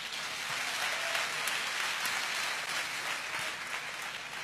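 A large congregation applauding: a steady wash of many hands clapping that eases slightly near the end.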